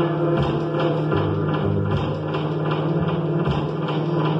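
Live experimental electronic music: sustained low drone tones layered with a dense texture and a run of repeated short percussive pulses.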